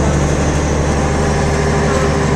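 A bus's engine running, heard from inside the cabin as a steady low drone with road noise.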